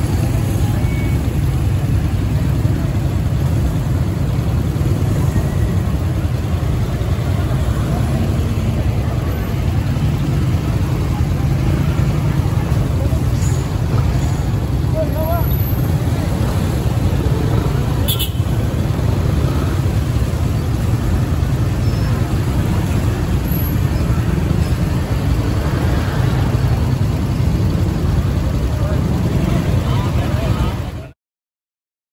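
Street traffic: a slow line of vans and motorcycles passing, heard as a steady low rumble, with voices mixed in.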